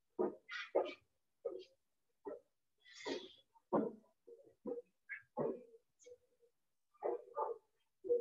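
Two balloons being batted by hand, giving a string of short taps at irregular spacing, a dozen or more in all.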